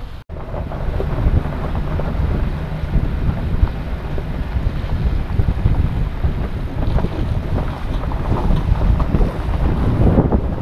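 Wind buffeting an exterior-mounted action camera's microphone over the low rumble of a Chevrolet Silverado pickup crawling along a gravel and dirt trail, with irregular small crunches and knocks from the tyres on stones. The sound breaks off for a moment just after the start.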